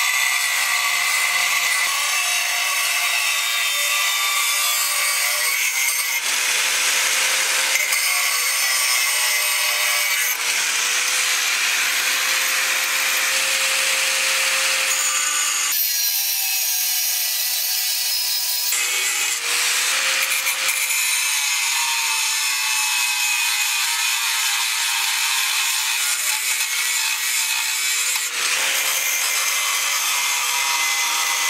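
Angle grinder with a thin cutting disc running under load as it cuts through aluminium plate: a steady high whine over harsh grinding hiss. The sound shifts abruptly several times.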